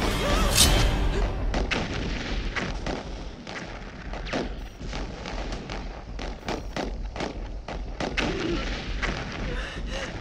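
Dramatic film score music with heavy percussive hits, the loudest a sharp boom about half a second in, followed by a run of lighter irregular strikes.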